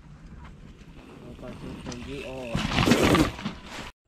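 A person's drawn-out, wavering yell, followed by a loud rushing noise lasting about a second, then the sound cuts off suddenly.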